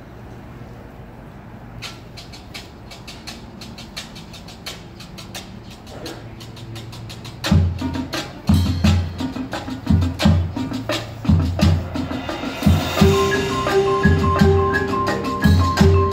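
A marching band's percussion opens its show: rapid clicks start about two seconds in, bass drums come in with heavy low hits about halfway through, and near the end a cymbal wash and held pitched notes from the mallet keyboards join them.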